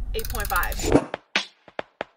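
A man's voice says a score over a low steady rumble that cuts off about a second in. It is followed by a few short, sharp percussive hits as the outro music begins.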